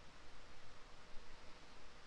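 Faint room tone: a low steady hiss with a faint hum, and no distinct sound event.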